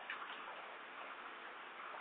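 Low, steady background hiss of the recording, with a few faint clicks just after the start.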